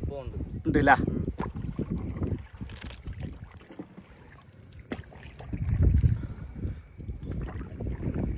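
Water sloshing and lapping against a small wooden country boat moving across open water, with wind buffeting the microphone; louder around six seconds in. A brief voice cuts in about a second in.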